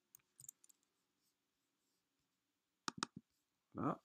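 Faint clicks of a computer keyboard and mouse. A few soft taps come in the first second, then a quick run of two or three sharper clicks about three seconds in.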